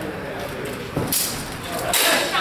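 Indistinct voices murmuring in the background, with a single knock about a second in.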